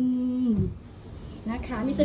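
A woman speaking Thai holds a drawn-out "mm" at the end of a word, then breaks off. A short pause filled with a low rumble follows, and about a second and a half in she starts talking again.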